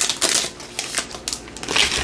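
Trading-card pack wrapper crinkling as it is torn open and pulled off the cards, in irregular bursts that are loudest just after the start and again near the end.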